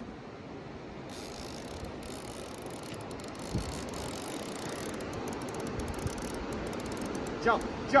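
Steady wash of river current and wind around the boat while a large white sturgeon is fought on a bent heavy rod. There is one low thump about three and a half seconds in. A run of light, rapid ticking from the conventional reel comes in the last couple of seconds.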